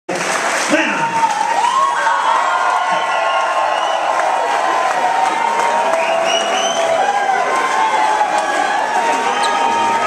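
Concert audience cheering and shouting, with clapping, many voices rising and falling together at a steady loud level.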